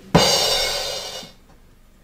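A drum sound effect: a sudden cymbal crash that rings out and fades away over about a second, played as a comic sting.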